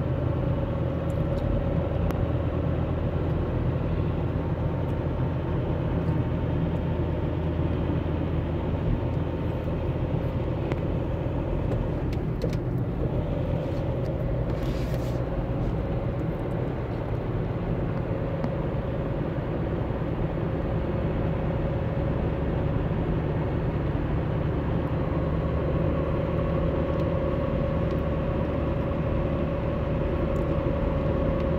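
Steady road and engine noise inside a vehicle cruising on a highway, a low rumble with a steady whine running over it.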